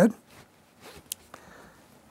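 Faint rasping and rustling with a few light clicks as a strip of cork roadbed is handled and pressed into place.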